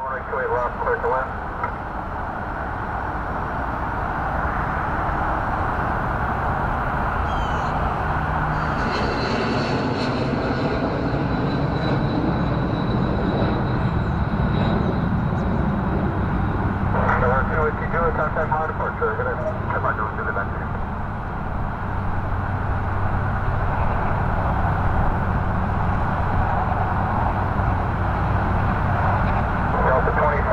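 Jet airliner engines running steadily on the runway, with a faint high whine that sinks slightly in the middle. Air traffic control radio voices come in briefly near the start, again a little past halfway, and at the end.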